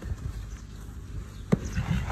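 A horse rolling in soft dirt and heaving itself up onto its front legs: dull thuds and scuffs of its body and hooves on the ground, with one sharp knock about one and a half seconds in.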